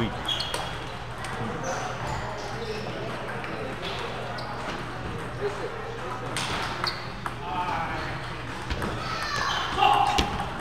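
Table tennis balls clicking off paddles and tables as rallies go on, with scattered clicks from several tables in a large hall. A background chatter of many voices runs underneath.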